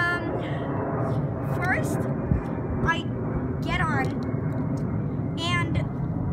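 Steady low outdoor rumble, with short high-pitched calls every second or so, several gliding downward.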